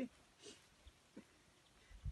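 Near silence: quiet ambience, with two faint brief sounds about half a second and a second in.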